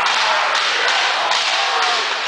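Thumps and taps of a step routine, feet and canes striking a gym floor, over a loud, cheering crowd.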